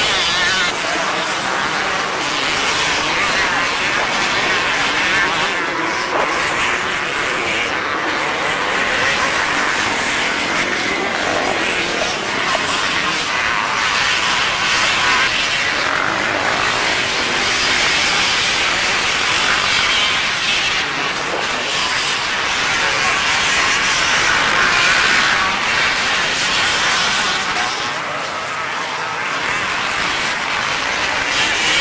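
Several motocross bikes racing on the course, their engines revving up and falling back as they pass through the turns.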